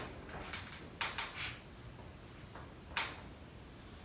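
White plastic spoon stirring glue and water in a bowl, knocking against the bowl in a few short clicks: one about half a second in, a quick cluster around one second, and one near three seconds.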